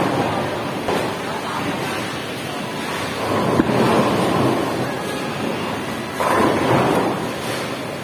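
Bowling alley noise: balls rolling on wooden lanes and pins clattering, over a steady rumble from the alley. A pin crash sounds right at the start. About three and a half seconds in comes a thud as a ball is laid onto the lane, followed by its rolling and a sudden loud pin crash a little after six seconds.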